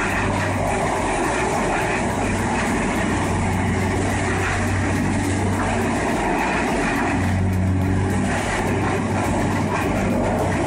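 Morbark 1300 tub grinder running steadily under load, grinding brush and wood debris, with a constant low engine hum under the grinding noise.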